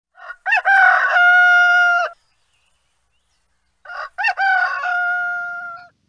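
Rooster crowing twice from a stock sound-effect recording. Each crow opens with a short rising-and-falling stutter and ends in a long held note, with a pause of about two seconds between the crows.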